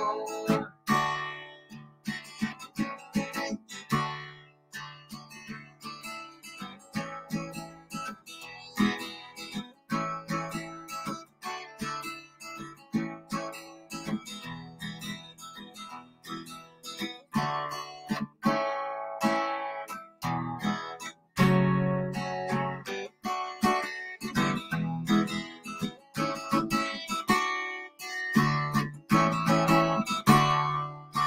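Solo acoustic guitar strummed in a steady rhythm, an instrumental passage between sung verses of a song.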